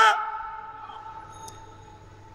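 The end of a man's long chanted note through a public-address system, cut off just after the start and dying away in the hall's echo, leaving a faint steady hum from the sound system.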